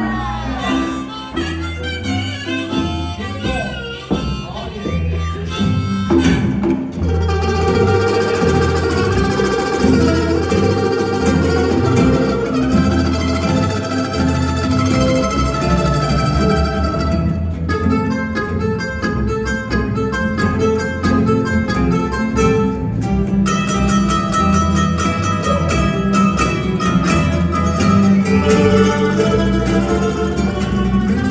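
Live acoustic jug-band blues in C: strummed ukuleles over a plucked bass line. Harmonica bends notes over them until about six seconds in, after which the ukuleles carry the tune.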